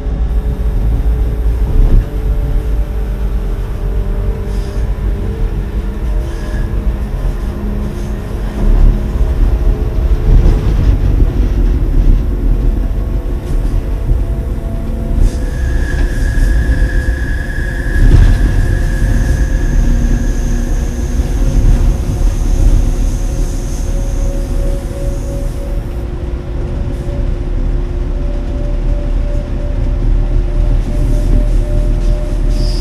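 Electric train running along the track with a steady low rumble. About halfway through, wheels squeal on a curve for a few seconds, followed by a fainter, higher squeal.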